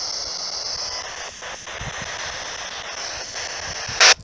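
Steady high-pitched drone of insects over an even background hiss, with no distinct events.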